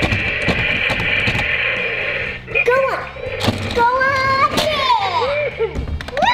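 Demo Duke toy monster truck running with a steady whirring engine sound for about two and a half seconds, then crashing into a wall with a couple of sharp knocks as its front bursts apart, with voice-like sound effects or exclamations around the crash.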